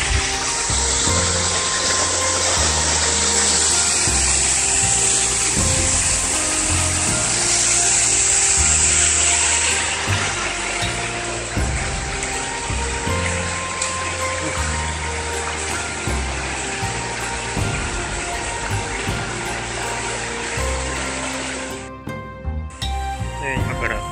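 Steady loud rush of a small mountain-stream waterfall, loudest in the first half and easing after about ten seconds. Background music with low notes that change about once a second plays over it.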